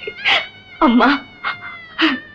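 A woman's short, high-pitched laughs, about four brief bursts, emotional and close to crying.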